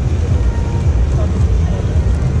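Low, fluctuating rumble of outdoor background noise, with faint distant voices.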